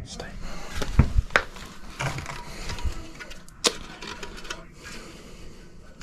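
Handling noises of a furnace inducer draft motor being turned over in the hands: a few separate sharp metal clinks and knocks, spaced about a second apart, the sharpest a little past halfway through.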